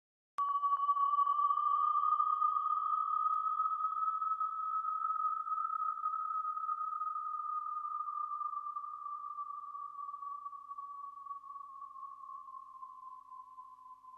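A single sustained high tone, with a fainter lower and higher tone under and over it, used as a soundtrack effect. It starts suddenly with a faint click, wavers slightly in pitch and slowly fades away.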